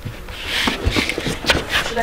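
Clothing rustling and a leather sofa creaking as a person gets up from it, with a few short soft knocks in the middle second.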